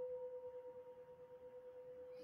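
Singing bowl ringing: a faint, steady single tone with a weaker overtone an octave above.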